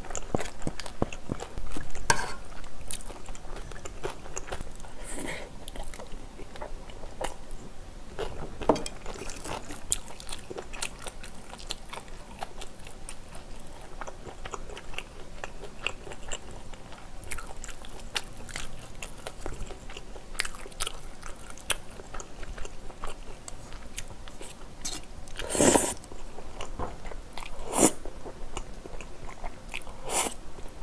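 Close-miked eating: wet chewing, biting and smacking mouth sounds of spicy stir-fried squid and pork with glass noodles. A few louder sharp sounds stand out about two seconds in and twice near the end.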